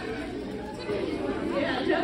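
Background chatter of several voices in a large, echoing room, with no single clear speaker.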